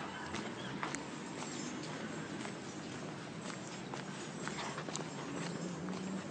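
Steady outdoor background noise with scattered light clicks and taps at irregular intervals.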